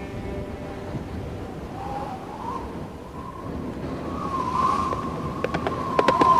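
A steady rushing, wind-like noise. About two seconds in, a single high, wavering whistle-like tone rises over it and holds, swelling louder near the fifth second. A few faint sharp clicks follow near the end.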